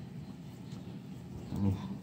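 Quiet handling of a T-shirt as it is pulled out and unfolded, with faint cloth rustles, and a short low murmur from a man's voice near the end.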